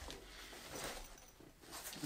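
Faint rustling of a nylon sling bag and its detached panel being handled.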